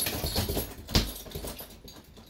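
A bare-knuckle punch lands on a hanging heavy bag about a second in, and after each blow the bag's hanging chain jingles and rattles as it dies away. The bag is a bit loose at the top, so it jingles more than normal.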